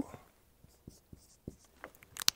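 A dry-erase marker writing a short word on a whiteboard: faint, short scratchy strokes and light taps of the tip.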